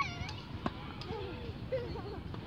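A child's high-pitched squealing voice right at the start, then one sharp pop of a tennis racket striking the ball on a serve about two-thirds of a second in, followed by more voices.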